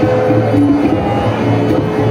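Live Indian ensemble music: tabla drums played under a steady harmonium and an acoustic guitar carrying a melody.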